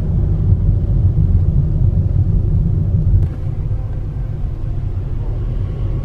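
Car interior noise while driving slowly: a steady low rumble from the engine and tyres, a little quieter from about halfway through.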